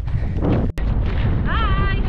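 Wind buffeting an action camera's microphone, a heavy rumble throughout, broken by a sudden short drop about three-quarters of a second in where the footage cuts. About a second and a half in, a short high-pitched voice call rises and falls.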